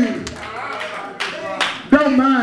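A few sharp hand claps in the second half, around a man preaching into a microphone.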